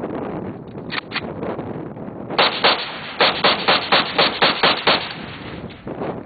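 AK-47 rifle (7.62×39 mm) fired in a rapid string of about a dozen shots over roughly two and a half seconds, about five a second, with a brief break early in the string. Two fainter bangs come about a second in.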